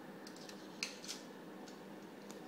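A few faint clicks and scrapes of a Shalya 10mm diathermy handpiece's shaft being slid into and fitted to its handle, the sharpest just before a second in.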